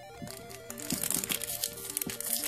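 Foil Pokémon booster pack wrapper crinkling as it is handled, over quiet background music with a simple stepping melody.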